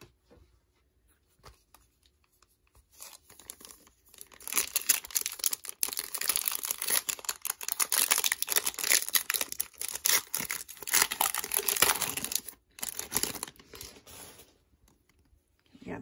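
The foil wrapper of a Metal Universe hockey card pack is torn open and crinkled. It makes a long run of ripping and crackling from about four seconds in until about fourteen seconds in, with a short pause near twelve and a half seconds.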